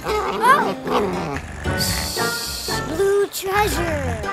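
Cartoon background music, with a character's wordless vocal sounds sliding up and down in pitch near the start and again about three seconds in, and a brief hiss about two seconds in.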